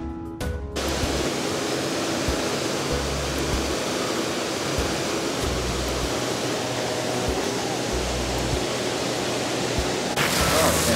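Steady rush of a tall waterfall falling onto rocks, an even noise at a constant level, with a brief break in the first second.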